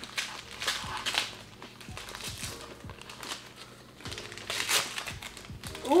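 Gift wrapping paper crinkling and tearing in short bursts as small wrapped presents are opened by hand, over faint background music.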